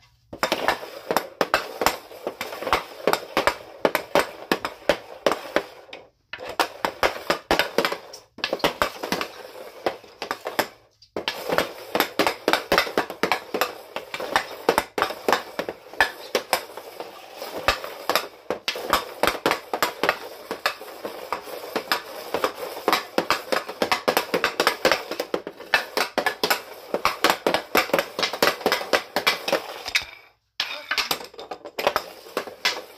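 Rapid stickhandling: the blade of a CCM Ribcor Trigger 4 Pro composite hockey stick clacking against a green off-ice training puck and tapping the white plastic floor tiles, several sharp clacks a second. The run breaks off briefly a few times.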